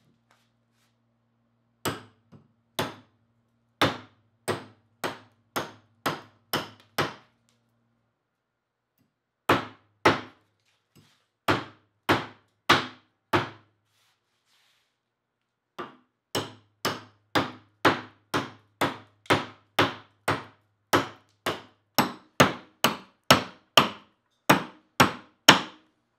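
A cast bronze hatchet chopping into a clamped piece of dry white oak. The blows come at about two a second in three runs with short pauses between them, and they are loudest near the end.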